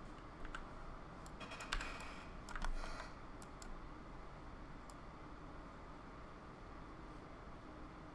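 Computer keyboard and mouse clicks, a scatter of quick taps in the first half, bunched around two to three seconds in, then faint steady room noise with only an occasional click.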